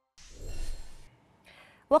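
A soft, breathy whoosh lasting under a second as the programme's title graphic cuts to the studio, then a short faint intake of breath and a woman's voice starting just at the end.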